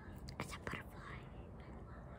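Two light taps of fingers on a hard glossy surface close to the microphone, about a third of a second apart, with soft whispering or breathy sounds after them.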